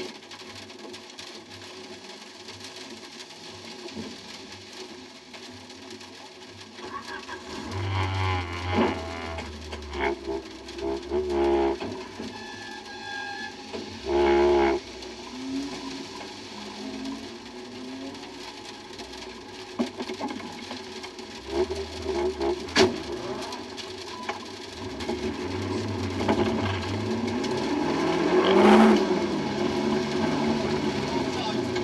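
Cabin sound of a stalled MG ZR rally car that has a starting fault: a steady hum, short bursts as the engine is cranked and fires, and a few knocks, with the loudest burst about halfway. Near the end the engine revs up as the car gets going again.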